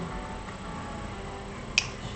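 A single sharp finger snap near the end, over low steady background noise.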